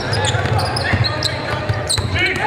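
Live basketball game in a gymnasium: thuds and footfalls on the hardwood court with a few short sneaker squeaks, over indistinct voices echoing in the large hall.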